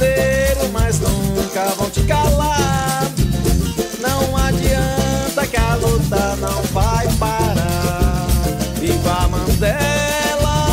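Upbeat Latin-style music at a steady level: a melody line over a driving rhythm section, with no clear words sung in this stretch.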